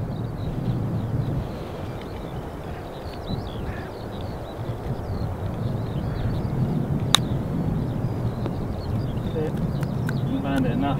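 Steady wind rumble on the microphone, with a single sharp click about seven seconds in as a 58° wedge strikes a golf ball for a short chip shot.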